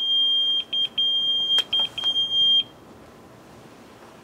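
Pager going off with an incoming page: one high electronic tone sounding in a pattern of long and short beeps for about two and a half seconds, then stopping.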